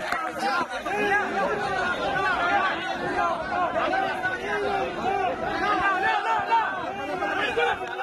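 A packed crowd of fans shouting and calling out at once, many voices overlapping into one continuous din.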